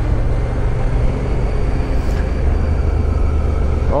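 Adventure motorcycle being ridden down a gravel road, its engine running steadily under wind and tyre noise.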